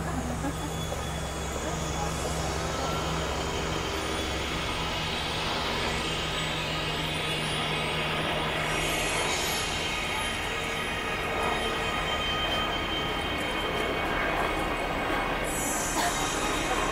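Steady background noise with indistinct voices over a constant low hum.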